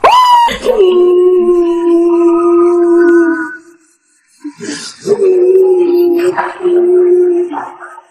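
A woman wailing after being slapped, in two long, loud, held cries. The first begins with a sharp rise in pitch and is held for about three seconds; after a brief pause a second cry is held almost as long.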